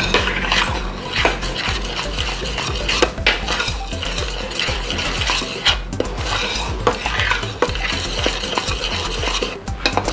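Metal spoon stirring a thick chocolate mixture of cream and cocoa in a stainless steel pot, with irregular scrapes and frequent clinks of the spoon against the pot.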